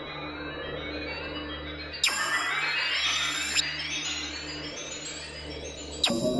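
Generative electronic drone music: a steady low drone under layers of tones gliding upward, with a sharp hit about two seconds in that brings in a brighter, fuller layer.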